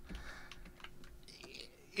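Faint clicking of computer keys, a few light, irregular key taps.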